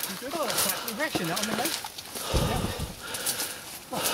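People talking while they push through dense undergrowth. Under the voices, twigs and dry leaves crackle and brush rustles with their steps. There is a low thump of footfall or handling about two and a half seconds in.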